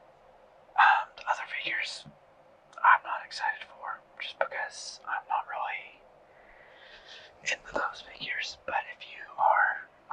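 Whispered speech coming in short phrases, thin-sounding with the low end cut away.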